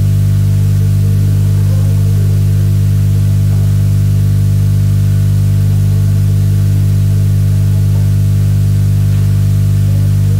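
Loud, steady electrical hum: a set of unchanging tones, strongest around 100 Hz, over a faint hiss.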